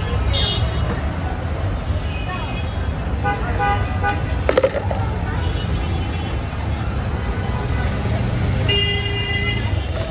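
Busy street traffic with a steady low rumble and vehicle horns tooting several times: a short high toot just after the start, another around three and a half seconds, and a longer one near the end. A single sharp knock comes a little past the middle.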